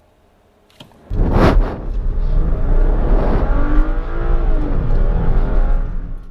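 BMW E93 3 Series accelerating hard from a standing launch, heard from inside the cabin. The engine note comes in about a second in and climbs in pitch as the revs rise.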